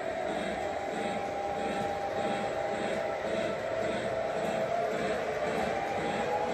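Model trains running on a track loop: a steady electric-motor whine over an evenly repeating rumble of wheels rolling on the track.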